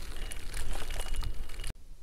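Wind rumbling on the microphone and tyre noise from a bicycle rolling along a rough gravelly path. The sound cuts off abruptly near the end.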